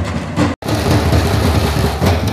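Dappu frame drums beaten in a dense, fast rhythm. The sound cuts out for an instant about half a second in.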